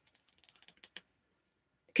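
A few faint, short clicks or creaks, bunched about half a second to a second in, with near quiet around them.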